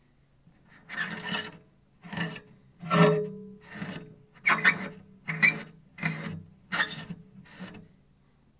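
A soft cloth rubbed hard along a cello's strings to wipe off built-up rosin. It makes about nine unpleasant rubbing strokes, roughly one every three-quarters of a second, starting about a second in, with a low pitched note sounding under each stroke.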